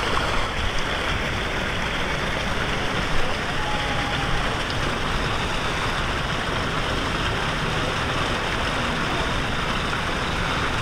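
Steady rush of water pouring into a tube water slide's start pool, with one brief bump about three seconds in.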